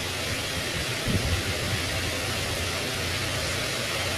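Steady background hiss with a low rumble underneath, like a running fan or machinery, with a brief low knock about a second in.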